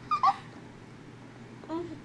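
A child's short, high-pitched squeal that falls in pitch at the start, followed near the end by a brief, softer vocal sound.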